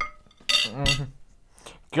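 A metal fork clinks against a plate at the start, followed by two short vocal sounds from a diner about half a second and a second in.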